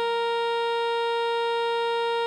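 Synthesized alto saxophone holding one long, steady note, written G5 (concert B-flat).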